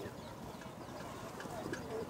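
Faint cooing of caged pigeons, a few soft wavering calls in the second half, over low background voices.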